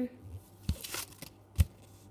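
Paper checklist sheet being handled and flipped over on a table, a brief papery rustle, with a single sharp tap about one and a half seconds in.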